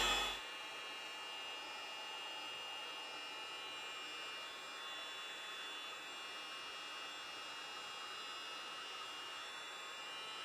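Electric heat gun blowing steadily, its fan and air stream making an even hiss, while it heats and blisters white paint on wooden trim. A louder hum cuts off in the first half-second.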